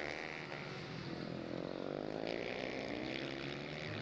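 Several supermoto race motorcycles with single-cylinder four-stroke engines revving through a bend. The engine pitch dips as they brake, then climbs again as they open the throttle.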